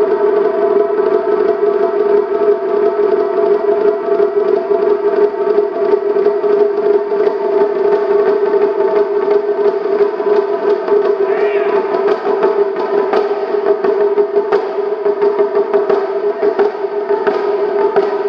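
Taiko drums in a sustained fast roll that holds one steady ringing pitch, with louder single strikes scattered through it.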